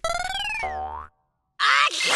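Cartoon 'boing' sound effect: a springy twang that rises in pitch for over half a second, holds briefly, then cuts off suddenly about a second in. After half a second of silence, a loud noisy burst begins near the end.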